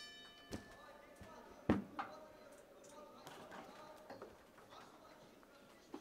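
Round bell ringing to start a boxing round, its tone dying away over the first second or so. A few sharp thuds follow, the loudest just under two seconds in, over low crowd murmur.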